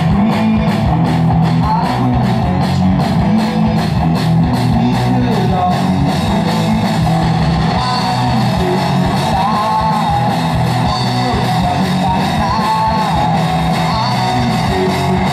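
Live rock band playing an instrumental passage of a song: distorted electric guitars, bass guitar and drums with a steady beat. A higher melodic line with pitch bends comes in about eight seconds in.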